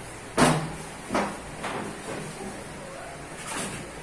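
A few short knocks and thumps on a stainless steel worktable as a lump of fondant is kneaded on it, the two loudest about half a second and a second in.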